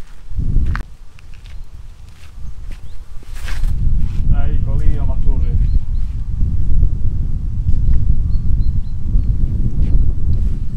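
Wind rumbling on the microphone outdoors, low and steady from about four seconds in, with a short knock about half a second in and a brief rustle a few seconds later.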